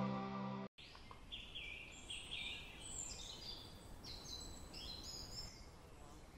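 Title music fading out and cutting off under a second in, followed by faint outdoor ambience with birds chirping: a run of short, high notes stepping up and down in pitch.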